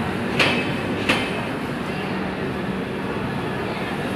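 Steady rumble of a passenger train beside the platform, with two sharp clacks about half a second and a second in, and a faint low hum in the middle.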